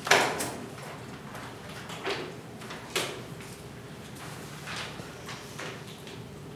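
A few sharp knocks in a room: the loudest just after the start, two more about two and three seconds in, then fainter ones, over low room noise.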